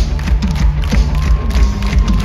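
Live rock band playing loudly through a venue PA, heard from the crowd: drums, bass and electric guitar, with a long held note in the middle.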